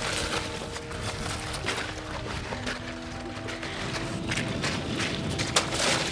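Background music of slow, held notes, over the scraping and hissing of a kick sled's metal runners gliding on ice, with a few sharper scrapes near the end.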